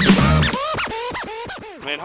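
Hip hop track with turntable scratching: the beat runs for about half a second, then a quick run of scratches, each a short rising-and-falling squeal, follow one after another.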